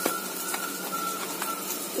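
Okra sizzling steadily as it fries in oil in an iron kadhai on a gas stove, with a light click at the very start.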